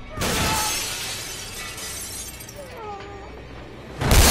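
Window glass shattering as a body crashes through it: a sudden loud burst just after the start that dies away over about a second.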